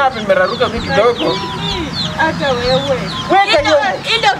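Chickens clucking, with people's voices over them.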